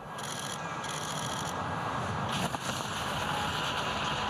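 Ski jumper's skis landing and sliding on the snow of the outrun, heard as a steady rushing, scraping hiss with a short knock about two and a half seconds in.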